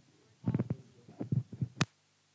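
Handling noise from a handheld microphone: several dull, low thumps as it is lowered and moved. Then a single sharp click near the end as it is switched off, and the sound cuts out completely.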